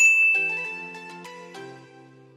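A bright chime sound effect strikes once and rings out, fading over about a second, over soft background music with sustained notes.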